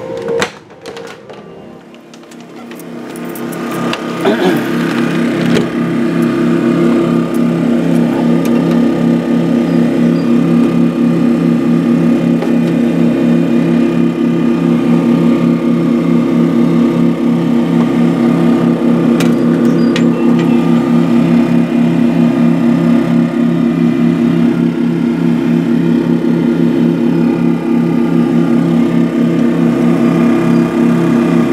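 Two Powermate 2000i inverter generators running in parallel under a near-full electrical load, with a steady engine hum. The hum grows louder over the first few seconds, then holds steady.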